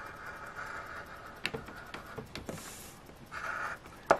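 A coin scratching the coating off a paper scratch-off lottery ticket: soft, intermittent scraping with a few small clicks.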